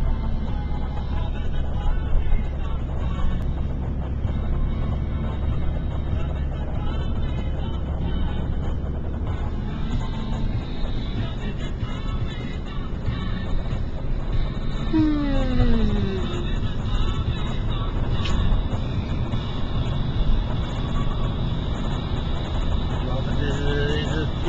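Steady low road noise inside a moving car's cabin. About fifteen seconds in, a man gives one long yawn that falls in pitch.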